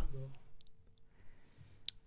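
A brief tail of a voice, then near quiet with a faint steady hum, a few soft clicks, and one sharp click just before the end.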